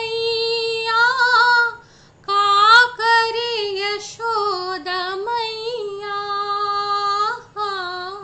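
A woman singing a Hindi song unaccompanied, in long held notes with short breaks for breath between phrases.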